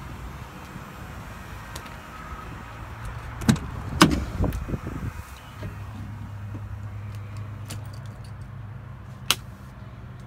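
Peterbilt 389 cab door opened, with two loud clunks about three and a half and four seconds in and smaller knocks after them, then keys jangling on their ring in the ignition and a sharp click near the end. A steady low hum runs underneath.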